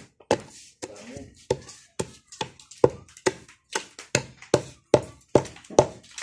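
Pestle pounding lumps of incense and kamangyan (benzoin resin) in a mortar to crush them into powder: a steady run of sharp knocks, about two to three strikes a second.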